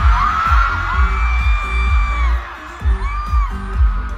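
Live pop music heard from the stadium crowd through a phone microphone: a heavy bass beat with singing over it and crowd voices mixed in.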